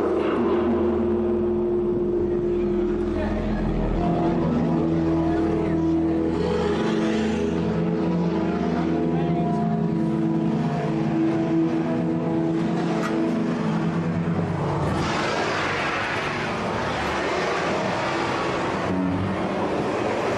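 Live amplified band music in a droning passage: held notes that step from one pitch to another every second or so. About fifteen seconds in it gives way to a dense, noisy wash.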